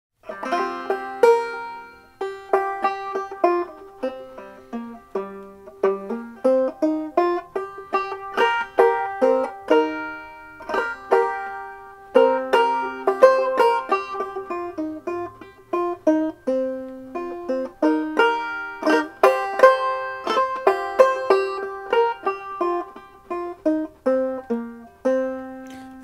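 Solo banjo picked as an instrumental introduction: a steady stream of sharp plucked notes that ring briefly and fade, played with no singing.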